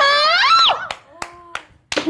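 A young woman's high, excited voice in the first second, then a few sharp hand claps about a third of a second apart.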